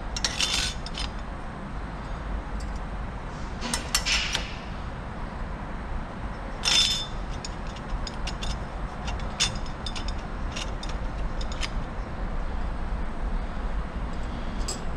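Steel clutch plates and friction discs clinking as they are slid down the splines into a Chrysler 62TE transmission input drum to build up the underdrive clutch pack. The loudest clinks come about half a second in, around four seconds and near seven seconds, with lighter ticks later, over a low steady hum.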